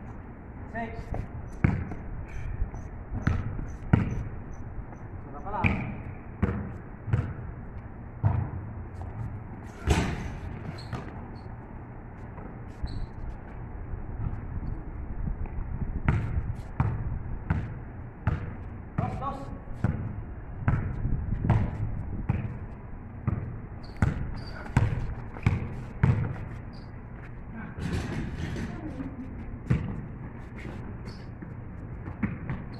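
A basketball bouncing on a paved outdoor court during a pickup game: irregular sharp dribbles and bounces, with players' voices calling out now and then.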